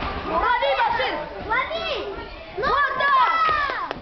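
Children's voices shouting encouragement: several high calls rising and falling and overlapping, with a short sharp knock just before the end.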